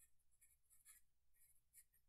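Faint scratching of a Sharpie marker writing on paper, a quick run of short strokes.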